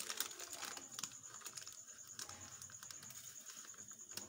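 Faint, irregular light clicks and taps, most frequent in the first second, over a faint steady high-pitched whine.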